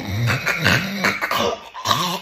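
A person snoring in an exaggerated, theatrical way with the mouth open: a low, rough, drawn-out snore that wavers up and down in pitch.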